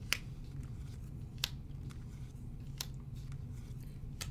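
Tarot cards being drawn from the deck and laid down on a table: three sharp card snaps spaced evenly a little over a second apart, with fainter card ticks between them, over a low steady hum.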